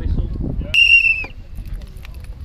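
A single short whistle blast, one steady high tone lasting about half a second, sounding about three-quarters of a second in over low crowd murmur.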